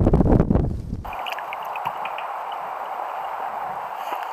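Wind buffeting the microphone as a loud rumble, which cuts off abruptly about a second in. A quieter steady hiss with a few faint ticks follows.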